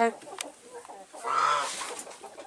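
A chicken giving one drawn-out call about a second in.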